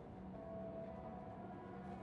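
Faint, steady hum of the Citroen Ami's engine running at low speed, heard from inside the car's cabin.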